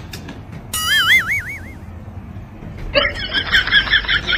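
Edited-in comic sound effects: a wobbly, warbling tone about a second in, then a quick run of short, high, bouncy notes from about three seconds in.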